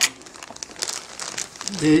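Packaging crinkling as it is handled, with a sharp click at the start.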